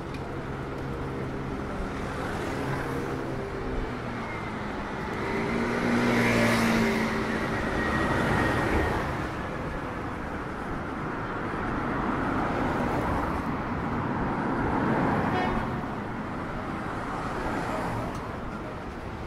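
City street traffic: motor cars passing on the road beside the path, the sound swelling twice, once from about five to nine seconds in and again a few seconds before the end. A steady engine hum at the start fades out after a few seconds.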